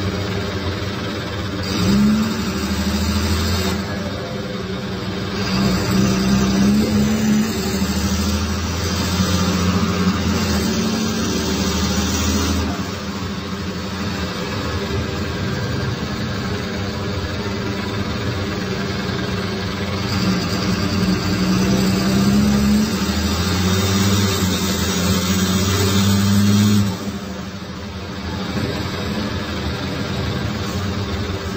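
Cummins ISBe 6.7 inline-six turbodiesel of a rear-engined Agrale MT17.0 LE city bus, heard from on board, running under load. The engine note climbs and grows louder in three pulls, starting about 2, 6 and 20 seconds in, and falls away suddenly as the throttle is let off, about 12 and 27 seconds in.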